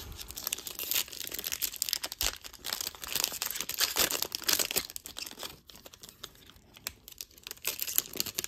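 A Topps baseball card pack's shiny foil wrapper being torn open and crinkled by hand: a dense crackling that dies down for a couple of seconds late on, then picks up again near the end.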